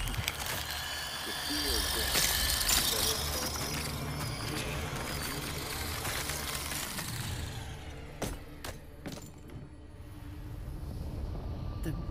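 Animated-episode battle sound effects: a long, noisy rush, then three sharp pistol shots about half a second apart roughly two-thirds of the way through.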